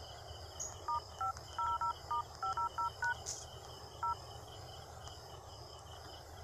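Smartphone dial-pad touch tones (DTMF) as digits are keyed in: about a dozen quick two-note beeps in the first three seconds, then one more beep about four seconds in.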